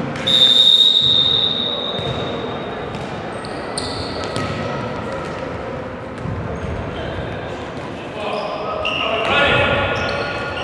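Referee's whistle, one long blast of about a second and a half, signalling the kick-off. It is followed by the futsal ball being kicked and bouncing on the hard hall floor, with players' shouts near the end, all echoing in the large hall.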